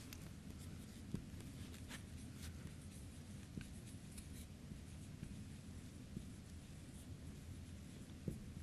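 Red marker pen writing on a whiteboard: faint, short scratchy strokes and light taps as each letter is drawn.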